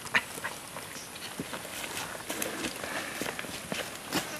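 Dry leaf litter rustling and crackling under shifting feet and moving bodies, with scattered sharp clicks and light footsteps.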